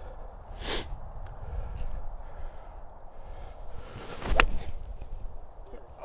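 A 4-iron striking a golf ball once, a single crisp click about four seconds in, on a low running iron shot struck cleanly ("struck that so good").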